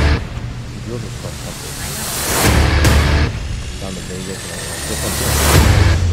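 Background voices of people talking, with loud bass-heavy music coming in twice, at about two and a half seconds and again near the end.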